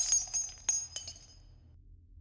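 Bright, high jingling of small bells shaken in quick clinks. The last clinks fall about a second in and ring away to near quiet.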